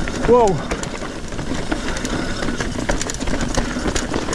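Trek Fuel EX 7 full-suspension mountain bike clattering down a chunky, rocky descent: quick irregular clicks and knocks from tyres and bike hitting rock over a steady rushing noise.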